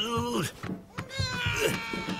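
Cartoon vocal calls: a short cry falling in pitch, then, about a second in, a long held call that slides slightly down.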